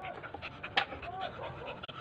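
A small dog panting quickly while lying down; the dog is ill.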